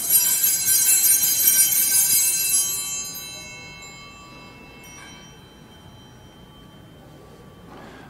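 Altar bells rung at the elevation of the chalice, just after the consecration: one bright ringing strike that fades away over about four seconds, with a faint second strike about five seconds in.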